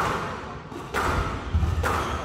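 Squash ball struck by rackets and hitting the court walls during a rally: three sharp, echoing smacks about a second apart, over low thuds.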